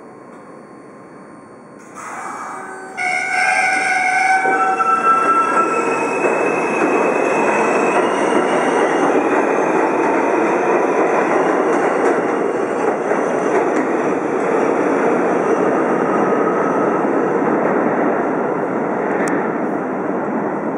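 R160A-2 subway train accelerating out of the station. About three seconds in, the motors start with several whining tones that step up in pitch over the next several seconds, under a loud, steady rumble of wheels on rail as the cars roll past.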